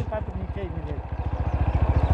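TVS Apache RTR motorcycle's single-cylinder four-stroke engine running at low revs with an even, rapid firing beat.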